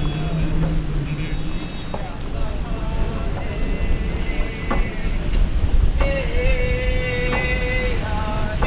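Tlingit and Haida singers performing a traditional song, with voices gliding between notes and holding one long steady note near the end.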